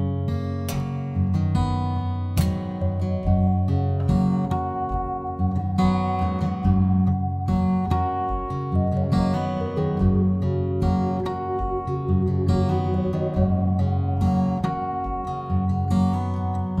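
Steel-string acoustic guitar strumming the chords of a slow song intro, with long held organ notes sounding above it.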